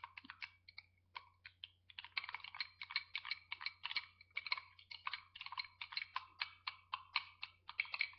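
Rapid light clinking of a small glass as green grass powder is stirred into a little water, a few scattered clicks at first and then a steady quick run of clinks from about two seconds in.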